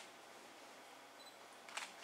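Near silence: room tone, with one brief sharp click at the very start.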